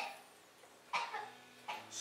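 A single short cough about a second into a pause in a quiet room.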